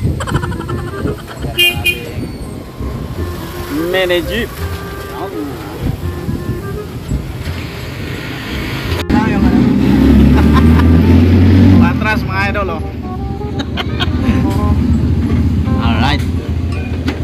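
Street traffic with short vehicle horn toots; about nine seconds in, a cut to the low rumble of a passenger jeepney's engine, heard from inside the cabin while riding.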